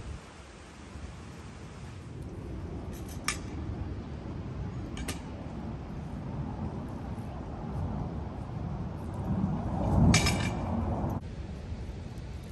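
Light metallic clinks over a steady low outdoor rumble: single clinks about a third and half way in, then a cluster of clinks with a louder low thump near the end.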